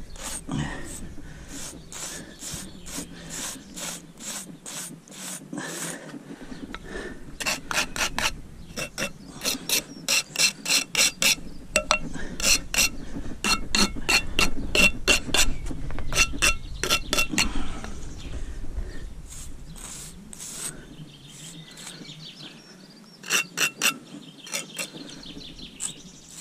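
A hardwood pointing stick and a steel pointing trowel scraping over fresh lime mortar joints and brick faces, in quick series of short rasping strokes. The strokes come thickest in the middle and again in a short run near the end.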